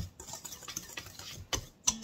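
Wire whisk stirring dry flour and sugar in a stainless steel bowl, a run of light ticks as the wires strike the metal, with two louder knocks near the end.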